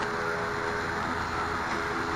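A steady mechanical hum holding several tones, unchanging throughout, with no distinct knocks or calls.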